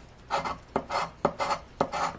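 A round scratcher disc scraping the coating off a paper scratch-off lottery ticket in short, quick strokes, about two or three a second, starting a moment in.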